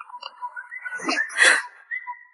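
Edited-in comic sound effect: a thin whistle-like tone held under two short noisy bursts, about a second in and a second and a half in, the second the louder.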